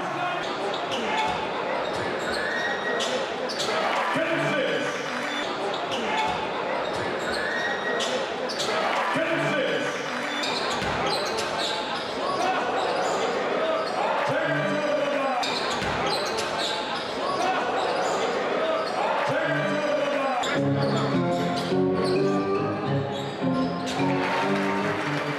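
Basketball game sound in an echoing sports hall: a ball bouncing on the hardwood court now and then, under music and voices.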